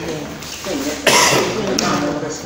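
People talking, with a sudden cough about halfway through.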